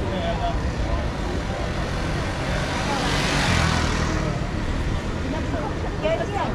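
Busy city street ambience: passersby talking and steady traffic rumble, with a motor vehicle passing close, swelling to its loudest about halfway through and then fading.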